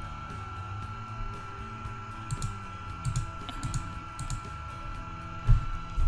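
Faint background music under a steady high-pitched electrical whine, with scattered small mouse clicks.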